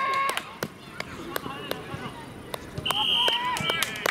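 Players shouting on a football field: a short call right at the start and louder shouts about three seconds in, with scattered sharp taps and clicks between them.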